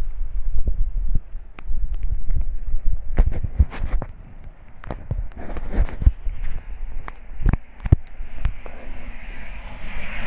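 Wind buffeting the phone's microphone with a low rumble, broken by irregular sharp knocks and taps, most of them in the middle of the stretch.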